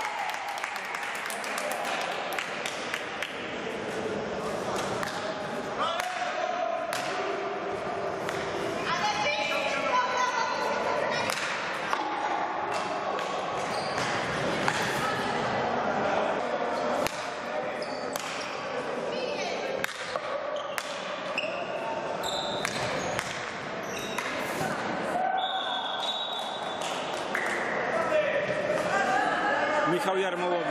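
Indoor field hockey game in a reverberant sports hall: repeated sharp knocks of hockey sticks striking the ball on the wooden floor, with players' voices calling out.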